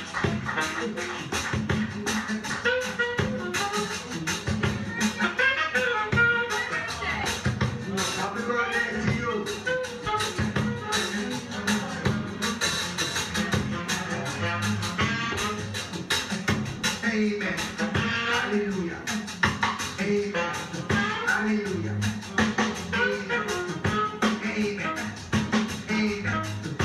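Live ska band playing: a steady beat of drums and percussion over a bass line, with a melodic lead line on top.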